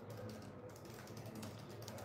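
Faint typing on a computer keyboard: many light key clicks in quick, uneven succession.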